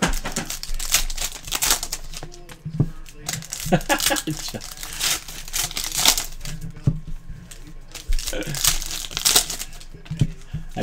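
Trading-card pack wrappers crinkling and tearing open in quick, irregular strokes as the packs are torn open and the cards pulled out.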